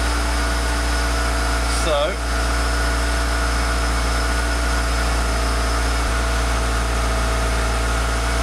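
Toyota MR2's 3S-GE four-cylinder engine running steadily in second gear with the rear wheels raised off the ground, the driven wheels spinning freely at about 20 mph. It is an even, unchanging hum.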